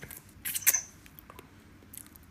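Wet mouth sounds of someone eating juicy melon: a few short smacks and clicks, the loudest a little over half a second in.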